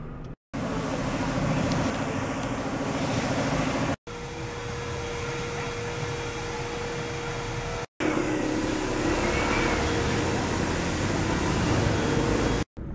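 Car wash machinery running: a steady hiss with a motor hum underneath, heard in three short clips that cut off abruptly, the hum changing pitch at each cut.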